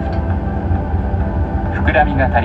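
Steady low drone of a jet airliner's cabin before takeoff, with no break or change. The recorded safety announcement voice starts again over the cabin speakers near the end.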